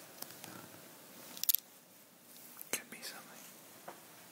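Quiet whispering, with short sharp hissing sounds, the strongest about a second and a half in.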